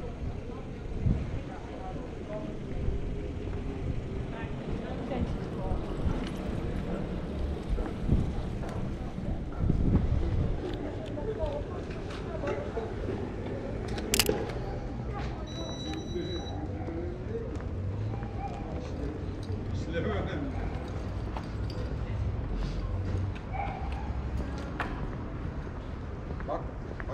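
Pedestrian street ambience with passers-by talking. About fourteen seconds in comes a single sharp shutter click from a Canon 5D Mark IV DSLR, and a brief high beep follows about a second later.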